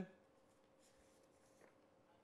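Near silence: studio room tone with a faint steady hum, and faint rustling of paper handled at the desk.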